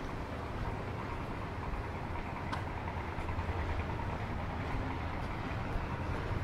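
Outdoor city ambience: a steady low rumble with a faint click about two and a half seconds in.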